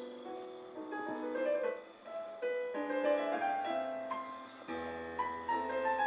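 Digital piano playing a classical piece: a flowing melody over chords, with a deep bass note coming in near the end.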